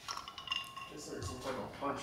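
Sips and swallows from an insulated tumbler with a stainless-steel rim, with a small clink of the cup at the start.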